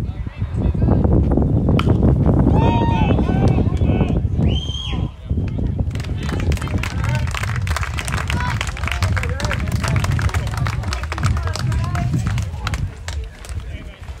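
Several people's voices calling out over a heavy, steady low rumble, with a scatter of sharp clicks through the second half.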